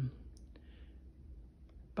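A pause in speech: a faint steady low hum with a couple of light clicks, one about a third of a second in and one near the end, and a soft breath-like rustle in between.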